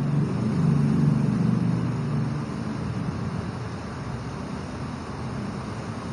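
A low voice quietly murmuring a recitation during the first two seconds or so, over a steady low room hum that carries on alone afterwards.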